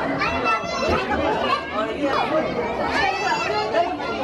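A crowd of young schoolchildren chattering and calling out all at once, many overlapping high voices with no single voice standing out.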